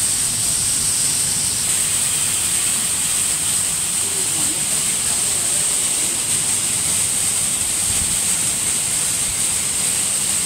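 Evaporative condenser of an ice-plant refrigeration system running: a steady rush of cooling water spraying and falling through the unit, with a high hiss.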